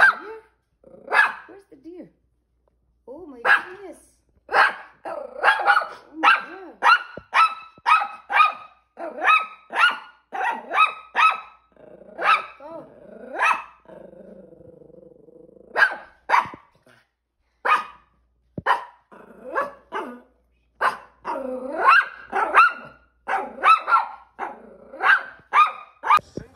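Small shaggy terrier-type dog barking over and over in runs of short, sharp yaps, about two a second, with a lower, drawn-out growl for a second or so around the middle.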